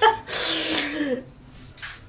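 A woman lets out one long, breathy laugh whose pitch falls at the end, followed by a short breath.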